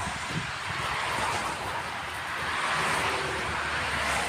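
Konstal 805Na tram running in along a snowy loop: a steady rush of wheel and track noise over a low rumble, growing a little louder as it draws near.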